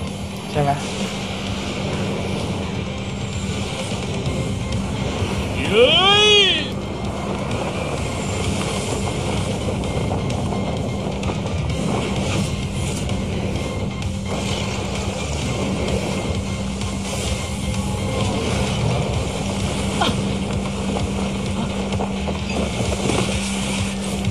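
Anime battle-scene soundtrack: dramatic background music over a steady rumbling layer of effects, with a man's short exclamation of 'hey' about six seconds in.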